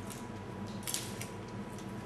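Faint rustle of dry, papery shallot skin being peeled off by hand, with a brief crackle about a second in.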